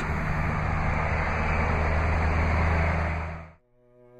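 Steady low hum and rush of a vehicle idling, fading out about three and a half seconds in.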